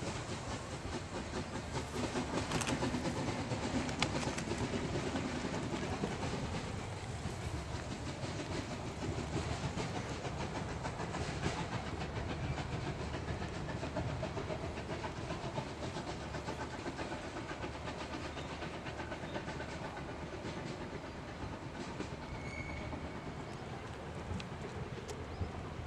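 Narrow-gauge steam train of coaches rolling away over the track, its wheels clicking and clattering over the rail joints. The sound is loudest early and slowly fades as the train draws off.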